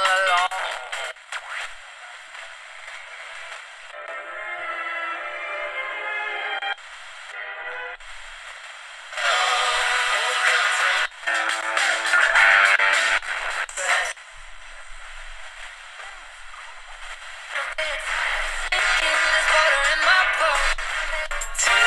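FM broadcast stations, music and voices, playing through the Vigurtime VT-16 kit radio's small speaker as it is tuned up the band, the programme switching abruptly every few seconds from one station to the next. The sound is thin, with almost no bass.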